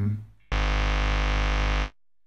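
Electrical hum and buzz from an electric guitar's single-coil pickup, heavily amplified through fuzz distortion, with no strings played. It switches on suddenly, holds steady for about a second and a half, then cuts off abruptly as the noise gate opens and closes around its threshold.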